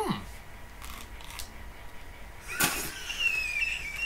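A man's short 'mmm' while chewing, then about two and a half seconds in a sudden loud exclamation and a high-pitched, wavering whoop of triumph.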